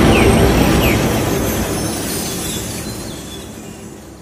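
Intro sound effect: a dense, rumbling whoosh with a faint tail of music, loud at first and fading steadily away to almost nothing by the end.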